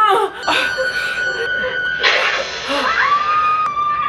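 A woman gasps sharply over the film's soundtrack of tense held music, then a long, high scream is held steady near the end.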